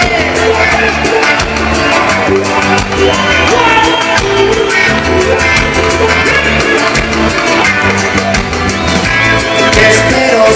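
Live band playing a fast, up-tempo song with a steady driving drum beat, strummed acoustic guitar, bass and a lead singer's vocals.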